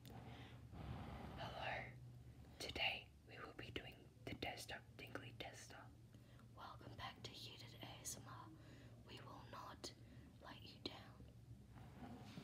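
Faint close-up whispering, broken by many short soft clicks, over a low steady hum.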